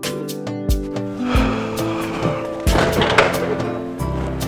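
Background film score with a steady beat. About a second in, a rushing noise swells over it, peaks near the three-second mark, then fades.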